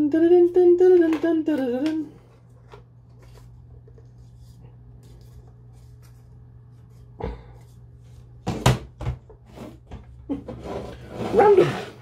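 A man's drawn-out laugh for the first two seconds, over a steady low hum. Later come a knock, then a few sharp knocks of hard plastic diorama pieces being handled and set down, and rustling clatter near the end.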